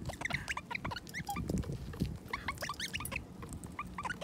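Wild crimson rosellas and a king parrot chirping in a rapid run of short, high calls at a seed bowl, with a few light clicks among them.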